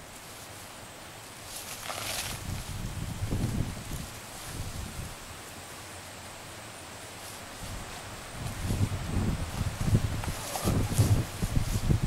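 Wind gusting on the microphone in uneven low rumbles, stronger in the second half, with short bursts of rustling about two seconds in and again near the end.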